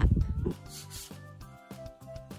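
A person's rising whoop over a loud low rumble on the microphone, cut off about half a second in, then quiet background music with held notes.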